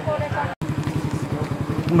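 A small motorbike engine idling close by with a steady, rapid low putter, while people talk over it.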